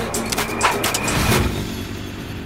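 Seatbelt buckle latching with a few sharp clicks, then a low rumble from a small three-wheeled cart's motor starting up and pulling away.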